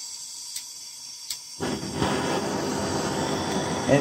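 Two faint clicks, then about one and a half seconds in a handheld blowtorch flame starts with a steady, even hiss.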